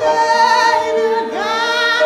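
A woman singing a worship song solo through the church microphone. She holds one long note, then slides up into a new note near the end.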